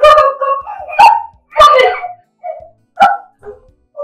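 A woman shouting angrily in a string of short, sharp outbursts with brief pauses between them.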